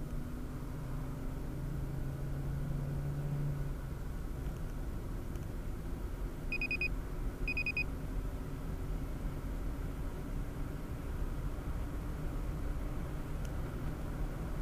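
Car road and engine noise heard inside the cabin as the car accelerates at highway speed, with an engine drone in the first few seconds. Midway come two short electronic beeps about a second apart.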